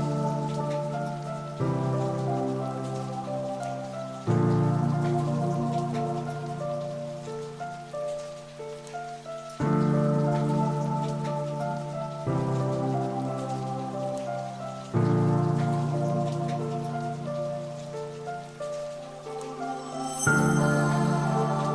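Background music: a calm piece of held chords that change about every two to three seconds, each change starting sharply and fading, with a quick line of higher notes running above.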